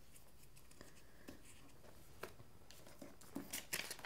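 Faint handling of paper and craft foam sheets on a tabletop: a few light taps and rustles spread out, then a short run of louder paper rustles near the end as a photo print is lifted.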